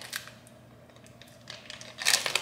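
Quiet room tone with a few faint clicks and taps of small items handled on a kitchen counter, two just after the start and a few more about one and a half seconds in.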